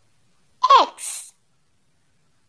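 A high voice sounding the letter X for phonics: a short vowel falling in pitch, then a brief hissing 'ks'.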